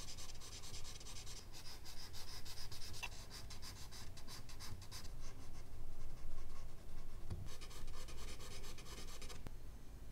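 A charcoal stick scratching across medium-surface drawing paper in quick, repeated hatching strokes. The strokes come in runs with short pauses, the longest run in the first half.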